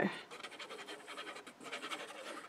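Faint, soft scratching of a liquid glue bottle's nozzle being drawn across cardstock while glue is laid along a paper gift bag's base flap.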